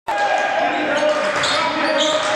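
A basketball being dribbled on a hardwood gym floor, with voices from the crowd in the hall.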